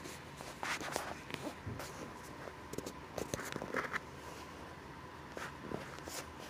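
Handling noise: scattered faint clicks and short rustles, over a faint steady high hum.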